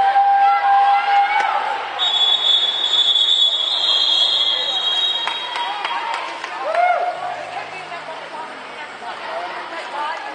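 Referee's whistle blown in one long, steady, shrill blast of about three seconds, starting about two seconds in, over crowd chatter and voices in an arena.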